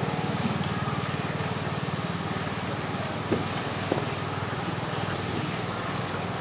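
A steady low mechanical hum with a fast flutter, with two faint knocks about three and four seconds in.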